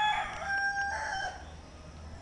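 A rooster crowing: one long crow that ends a little past halfway.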